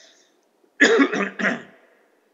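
A man coughing, three quick coughs about a second in.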